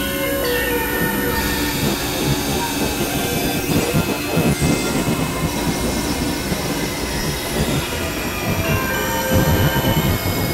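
Dense layered experimental electronic noise music: many sustained high, piercing tones held over a churning, rumbling low end, with no beat.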